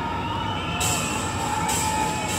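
Large open-air festival crowd noise from a live concert recording, with cheers and whoops and a few long held tones, just before the band starts. About a second in, the crowd noise gets brighter and louder.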